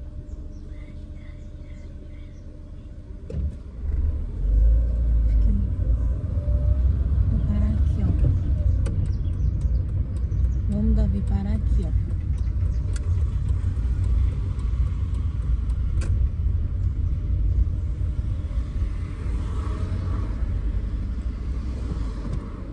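Low rumble of a car's engine and road noise heard from inside the cabin as the car drives along. It steps up sharply about three and a half seconds in and then holds steady.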